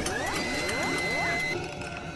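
Logo-animation sound design over music: synthesized rising sweeps repeating about twice a second, one levelling off into a held high tone for about a second, with a few sharp clicks at the start.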